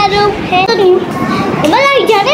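A young girl's high voice talking, with a rising, sung-out phrase near the end.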